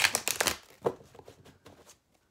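Mythic Tarot cards being shuffled by hand: a dense run of card flicks and rustles in the first half second, then a few single snaps of cards.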